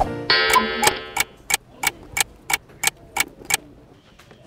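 Clock-ticking sound effect: a short ringing tone, then about ten even ticks at roughly three a second, which stop shortly before the end.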